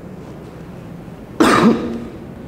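A man coughs once, loudly, about one and a half seconds in, after a stretch of quiet room noise.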